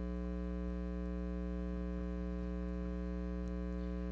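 Steady electrical mains hum: a low, unchanging buzz with a ladder of evenly spaced overtones.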